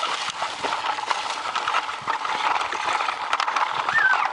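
Yellow plastic toy car pushed over dry leaf litter, mulch and gravel: a steady run of crunching and clattering, many small irregular clicks.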